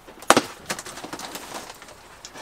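Packing tape being peeled off a cardboard box: one sharp rip about a third of a second in, followed by fainter crackling as the tape comes away.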